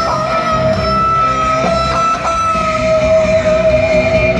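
Live rock band playing in an arena, recorded from the audience, with a lead guitar holding one long sustained note with slight vibrato over the band.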